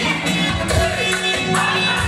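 Live band playing dance music with a steady drum beat and sustained melody.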